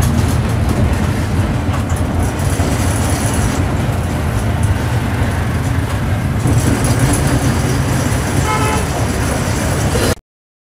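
Steady engine and road noise inside a moving TNSTC bus, with a short vehicle-horn toot near the end.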